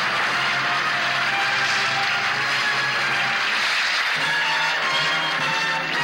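Live band music playing the instrumental introduction to a medley of Cuban songs: a dense wash of sound that settles about four seconds in into clearer held notes.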